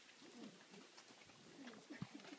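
Near silence, with a dove cooing faintly twice.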